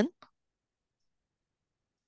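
A spoken word ends right at the start, followed by one faint short click, then near silence.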